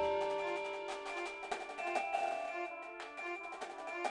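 Marching band music: held wind chords over sharp, repeated percussion taps.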